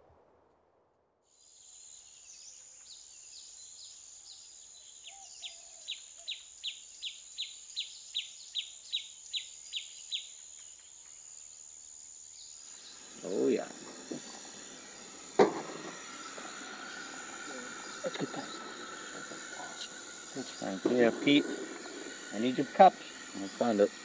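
Steady high-pitched insect chirring, with a repeated call pulsing about three times a second for several seconds. Later comes a stretch of camp handling sounds, with a swell that fits liquid being poured from a jug into a mug, a sharp click, clinks and brief voices near the end.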